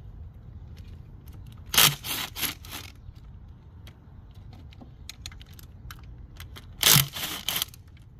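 Cordless drill spinning a socket on an extension in two short bursts of about a second each, undoing bolts on top of the engine, with small metallic clicks of the socket and tools in between.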